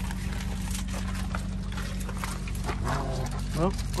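Semi truck's diesel engine idling with a steady low hum, with scattered light clicks and crunches over it. A voice comes in near the end.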